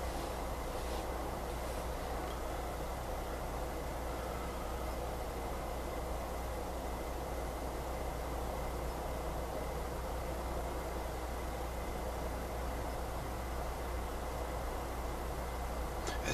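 Steady background hiss with a constant low hum and a faint, thin high tone, unchanging throughout.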